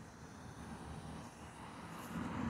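A minivan passing on the road: a faint, low rumble of engine and tyres that swells slightly as it goes by.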